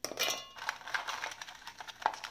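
Chocolate sandwich biscuits dropped by hand into a stainless-steel mixer-grinder jar: a quick, irregular run of small clinks and taps on the metal, with a brief metallic ring at the start.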